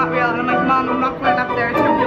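Music playing, with stringed instruments to the fore.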